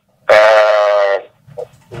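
A man's drawn-out hesitation sound, a held 'uhh' lasting about a second at a steady pitch, heard over a conference-call telephone line.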